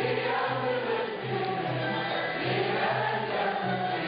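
Turkish classical music choir singing a şarkı with instrumental accompaniment over a steady low beat, about two beats a second.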